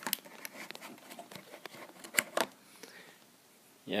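Light plastic clicks and taps of a card being handled and plugged into a USB hub, with two sharper clicks a little after two seconds in.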